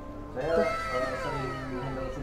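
A sound effect of several pitched tones gliding downward together. It starts about half a second in and trails off over a second and a half, with a meow-like quality.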